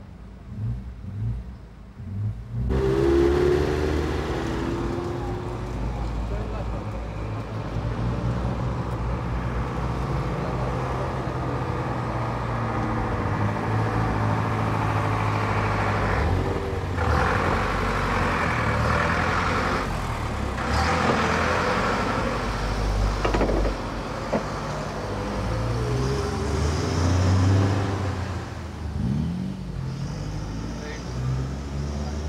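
Motor vehicle engines running in street noise, quiet for the first few seconds, then loud and continuous with a brief rising rev about three seconds in.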